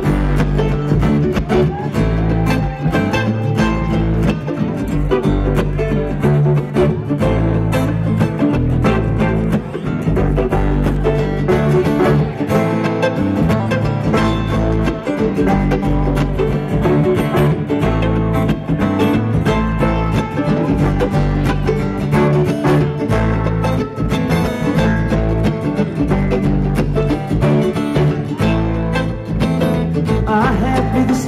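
A bluegrass string band playing live, an instrumental passage without singing: banjo, upright bass, acoustic guitar and mandolin together at a steady loud level.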